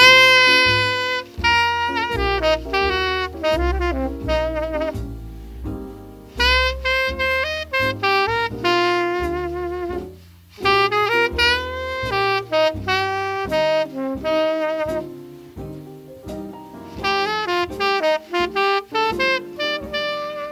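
Jazz combo recording: a horn plays a legato melody of long, bending held notes over a walking bass line, with a short break in the phrase about ten seconds in.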